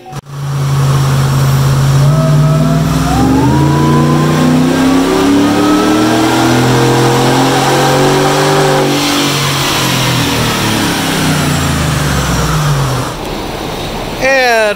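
Callaway-supercharged 6.2-litre V8 of a GMC Yukon Denali making a full-throttle pull on a chassis dyno. Engine speed climbs steadily for several seconds with a thin whine rising above it. About nine seconds in the pitch turns and falls away as the truck coasts down, and the sound drops near the end.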